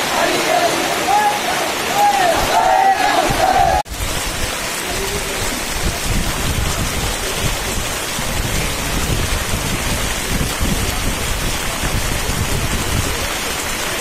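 A crowd of mourners chanting together for the first few seconds, then cut off suddenly by steady heavy rain with a low rumble on the microphone.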